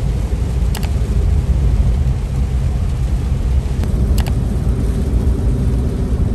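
Steady low rumble of a vehicle on the road, heard from inside the cabin, with a few faint clicks about a second in and again around four seconds.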